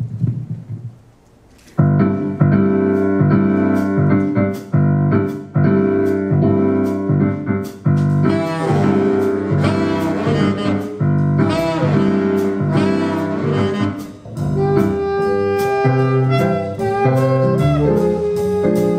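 Small jazz combo of saxophones, piano, upright bass and drum kit coming in together about two seconds in, after a short quiet start. The saxophones carry the melody over piano, bass and drums.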